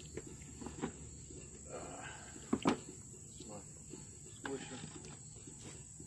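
Wooden slatted cider-press basket being lifted out and swapped, with a few knocks of wood on wood, the loudest about two and a half seconds in. A steady high insect trill, crickets, runs underneath.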